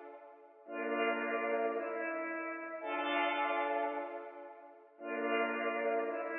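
Synth pad ('bumblebee' pad) playing back slow sustained chords built on D minor and A-sharp major, with a new chord about a second in, near the middle and about five seconds in, each one fading before the next.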